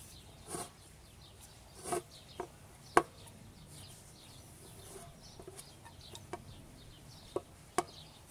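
Wooden rolling pin working dough on an aluminium pan lid, with a few sharp knocks scattered through, over hens clucking and small birds chirping.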